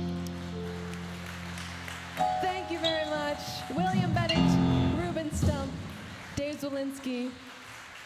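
Jazz trio of grand piano and double bass sustaining a chord. A female vocalist's voice comes in over it from about two seconds in.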